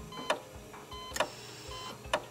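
Quiet passage of title-sequence music: sharp ticks a little under a second apart, with short electronic beeps in between.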